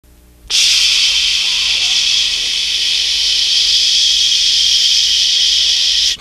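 Steady, high-pitched hiss of TV-style static noise, starting suddenly about half a second in.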